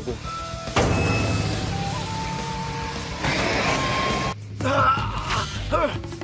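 Anime fight sound effects over background music: a sudden hit about a second in that fades over the next two seconds, then a second rush of noise around three seconds in. A short strained voice sounds near the end.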